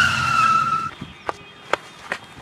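Tyre-screech skid sound effect, the cartoon sign of a sudden stop: a loud squeal falling slightly in pitch, lasting about a second. It is followed by two or three light clicks.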